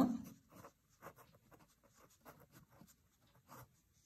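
A pen writing on paper: faint, short scratching strokes of the nib as a line of handwriting is put down.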